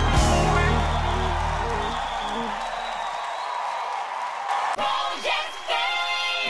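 A song's backing music with heavy bass fades out over the first two seconds, leaving a studio crowd cheering and whooping. Near the end a short sung jingle starts.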